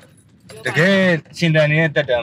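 A man talking inside a car cabin, starting about half a second in after a brief lull.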